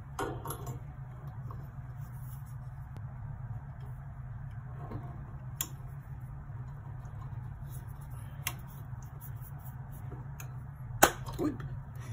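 Hands handling a microphone and its spider shock mount and cable: scattered light clicks and knocks of plastic and metal parts, the loudest a sharp click about a second before the end, over a steady low hum.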